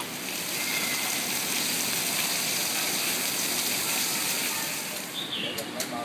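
A steady, even rushing hiss that fades away about five seconds in, with faint voices beneath it and a couple of sharp clicks near the end.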